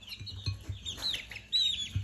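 Young chicks peeping: a run of short, high chirps that rise and fall in pitch, the loudest coming near the end.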